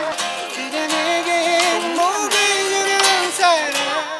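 Live acoustic music: a man singing over a strummed acoustic guitar, with a few strikes from a small drum kit.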